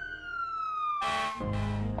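Fire engine siren wailing, its pitch slowly falling after a rise, with a short burst of noise about halfway through.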